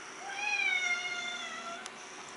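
Domestic cat giving one long meow that rises slightly and then sags in pitch before fading out: an insistent demand to be let outside.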